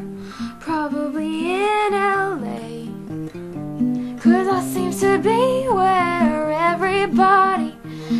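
A woman singing a verse, accompanied by a strummed acoustic guitar.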